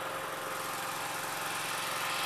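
An engine running steadily at idle: an even hum with a constant tone.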